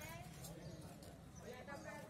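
Faint voices of people talking, over a low steady hum.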